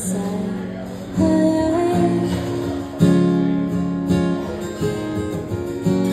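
Acoustic guitar playing an instrumental passage, strummed chords ringing under picked notes, with firmer strums about a second in and again about three seconds in.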